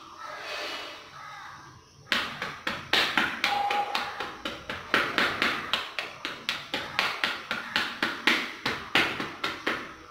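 Small hand fork raking and breaking up soil in a shallow metal tray, its tines scraping and tapping on the tray. Rapid regular strokes, about three a second, begin about two seconds in.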